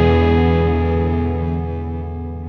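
Electric guitar through distortion and effects, with a low bass note, holding one sustained chord that rings and slowly fades away: the closing chord of a rock song.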